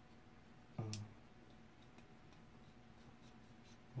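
Faint scraping and ticking of a utility knife blade being worked at the end of a handmade octopus lure; the blade is too blunt to cut cleanly. About a second in there is a short grunt with a sharp click.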